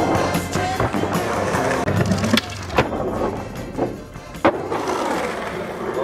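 Skateboard grinding down a long stair rail, then several sharp clacks of the board hitting the ground from about two and a half seconds in, over music.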